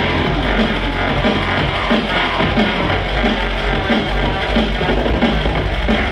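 Live drum and bass DJ set played loud over an arena sound system, with heavy bass and a fast steady beat of about three hits a second. It sounds muffled in the highs.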